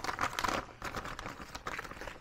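Clear plastic packaging bag crinkling and crackling as hands handle it at the top opening.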